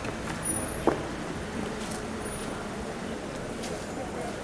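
A car's engine running at low speed as it rolls up and stops, a steady low rumble. A single sharp click or knock about a second in.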